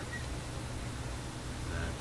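Steady low electrical mains hum under faint hiss.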